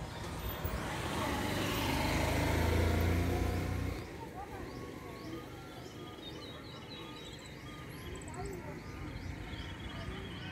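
A motor vehicle passing close by, its rumble building to a peak about three seconds in and dropping away sharply around four seconds. After it, birds keep chirping, with one short high call repeated about twice a second.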